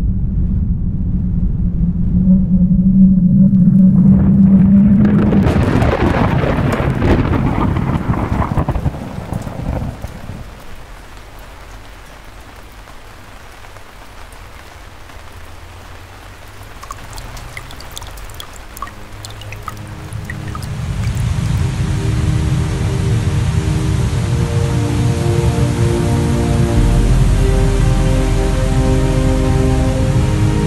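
Thunder rumbling, swelling to a loud crash about five seconds in and rolling away into steady rain. About twenty seconds in, music with long held notes comes in over the rain.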